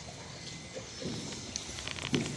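A beagle eating dry kibble from a stainless steel bowl: a few crunches and sharp clicks of kibble against the metal, bunched near the end.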